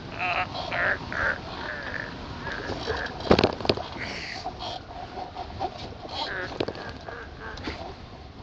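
Wind rushing over the hang glider and its microphone as it lands, with the pilot's short grunts and breaths. A loud thump about three seconds in as the glider touches down.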